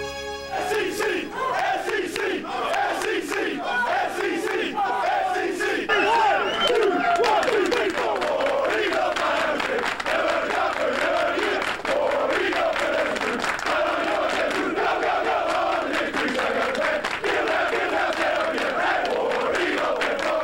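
A roomful of football players shouting and cheering together in a locker room, with hand clapping throughout. Music cuts off about half a second in.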